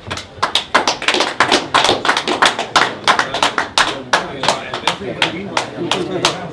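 Small crowd applauding, with distinct individual hand claps coming several a second in an uneven patter.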